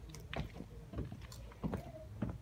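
Footsteps on an outdoor wooden staircase: steady hollow footfalls, a little under two a second.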